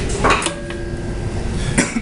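Metal tools clinking twice, about a second and a half apart. The first clink leaves a faint ringing tone for about a second.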